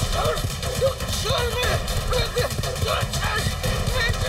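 A horse galloping, its hoofbeats coming quick and dense on dirt, with a man crying out again and again over them.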